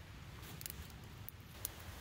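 Faint crackling of a small wood campfire: a few sparse, light ticks over a low background rumble.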